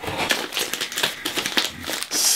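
A cardboard package being slit open with a utility knife and its plastic wrapping pulled apart and crinkled: a dense run of irregular scratchy clicks and crackles.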